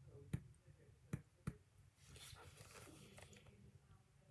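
Stylus tip tapping on a tablet's glass screen: three sharp taps within the first second and a half, followed by a faint rustle.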